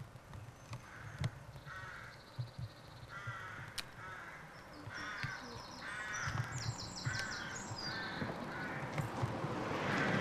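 Birds calling: a run of short repeated calls, often in pairs, with thinner high calls above them in the middle of the stretch.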